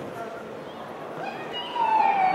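Players' voices calling on a football pitch: a long, loud shout that falls in pitch comes in near the end, after a quieter stretch of distant calls.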